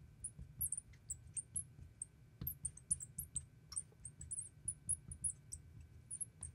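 Marker writing on the glass of a lightboard: a run of short, high-pitched squeaks, several a second, as a line of words is written, with one sharper tap about two and a half seconds in.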